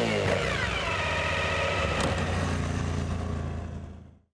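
Motorcycle engine revving, its pitch rising briefly and then dropping back into a steady running note that fades out near the end.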